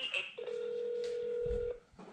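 Telephone ringback tone heard over a phone call: one steady tone lasting about a second and a half, the line ringing at the other end while the call waits to be answered.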